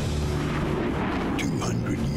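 Dark trailer score: a heavy low drone with rumbling, explosion-like sound effects.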